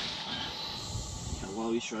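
Steady hiss of a portable propane heater burning, with a man's voice coming in near the end.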